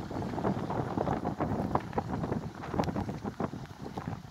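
Wind buffeting the microphone in uneven gusts, a rumbling rush with irregular bursts.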